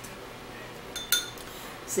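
A stir stick knocking against a drinking glass: a short clink with a brief high ring about a second in, and another knock just before the end.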